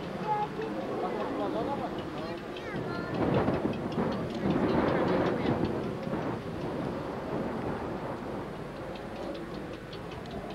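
People's voices talking near the microphone over a steady rumbling noise that swells for a few seconds in the middle.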